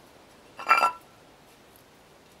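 A plate clinking against stone paving as it is picked up: one short, ringing clatter about half a second in.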